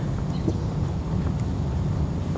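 Steady low rumble of wind buffeting the microphone outdoors, with a couple of faint taps.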